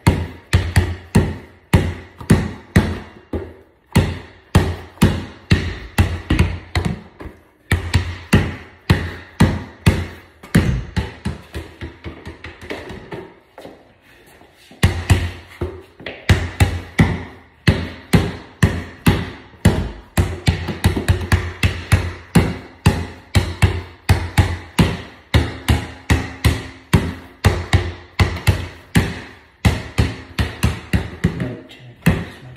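Basketball dribbled rapidly on a hard floor, about three bounces a second, each bounce ringing briefly. The dribbling stops for a few short breaks, the longest just before halfway.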